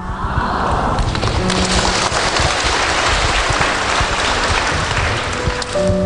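A large audience applauding, a dense steady clatter of many hands that stops suddenly at the end.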